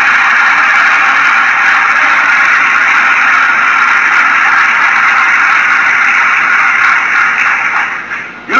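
Audience applause in a recorded speech, heard through a TV speaker: a steady, loud wash of clapping that breaks out as the speaker finishes a line and dies away near the end.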